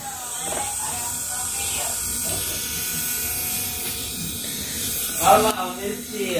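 Pen-sized electric nail drill running steadily with a high-pitched whir, then switched off near the end.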